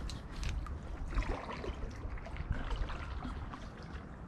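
Water trickling and lapping around a kayak in shallow water, with scattered small drips and ticks.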